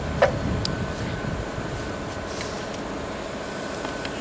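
A short knock as an angle grinder is set down on a ceramic tile, over a steady background hum.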